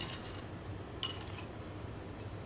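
A wire whisk clinks once against a glass mixing bowl about a second in, over a faint steady low hum.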